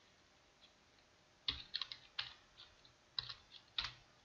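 Computer keyboard typing: a short run of keystrokes about a second and a half in, and another near the end.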